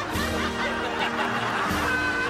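Light comedy background music with people laughing over it.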